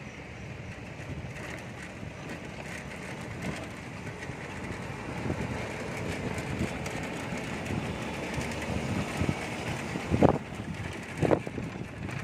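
Pedal trishaw (beca) rolling along, a steady rumble of its wheels over brick paving with wind on the microphone, and two sharp knocks near the end, about a second apart.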